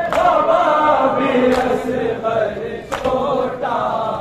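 A group of men chanting an Urdu noha, a Muharram lament, in unison. Sharp chest-beating strikes (matam) keep time about every second and a half, three of them.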